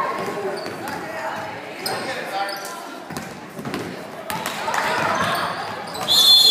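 Basketball bouncing on a hardwood gym floor in play, repeated short thuds echoing in a large gymnasium, with spectators' voices underneath.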